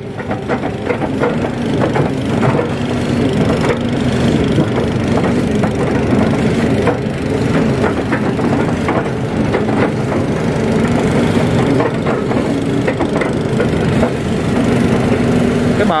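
Kato HD512 crawler excavator's diesel engine running steadily under hydraulic load as the bucket presses and smooths wet mud, heard from the operator's seat. Frequent small clicks and knocks come from the machine throughout.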